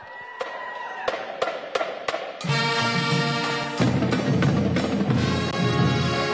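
A high school pep band starting up: a steady count-off of drumsticks clicking, about three a second, over a held high tone, then the band comes in with brass and drums about two and a half seconds in, louder with bass drum from about four seconds in.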